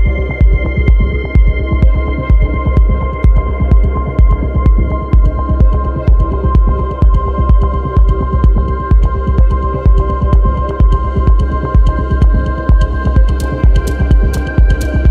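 Electronic techno music: a steady deep kick drum beat, about two beats a second, under long held synth tones, with sharp high hi-hat ticks coming in near the end.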